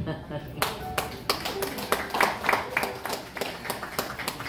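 Scattered applause from a small audience in a room: a handful of people clapping unevenly, starting about half a second in.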